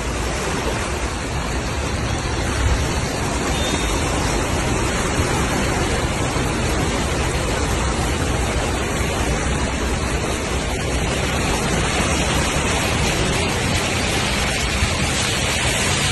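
Floodwater rushing across a street: a steady, loud, even rush of water.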